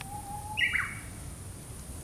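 A faint thin whistle, then a brief high call about half a second in that steps down sharply in pitch, over a low steady background rumble.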